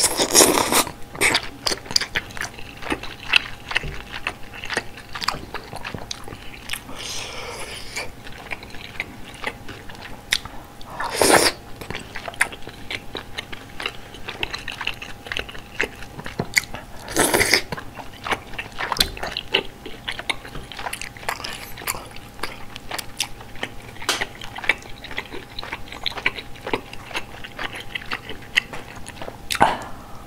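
Close-miked chewing of malatang, with moist mouth clicks and the crunch of bean sprouts throughout, broken by a few loud slurps of noodles and soup at the start, twice in the middle and at the end.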